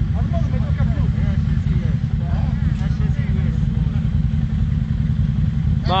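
Quad bike (ATV) engine running steadily at low revs while the machine sits bogged in deep mud, a continuous low rumble.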